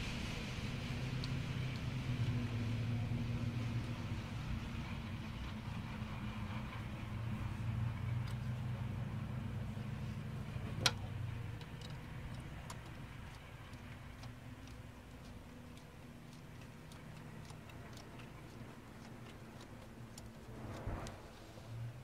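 A low, steady mechanical hum like an idling engine, which fades away after about twelve seconds. There is one sharp click about eleven seconds in and a few faint ticks after it.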